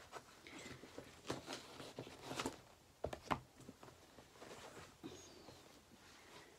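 Faint rustling with a few soft clicks, clustered about one to three and a half seconds in, as a cloth project bag and the fabric inside it are handled.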